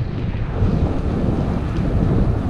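Wind rushing over the microphone of a camera riding on a moving bicycle, with the bike rolling along a paved trail: a steady low rumble.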